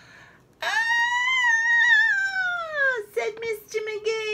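A woman's voice giving one long, high-pitched 'Aaaah!' cry that starts about half a second in, then slowly falls in pitch. It carries on lower, in a few short broken 'ah' sounds: a read-aloud scream for a character.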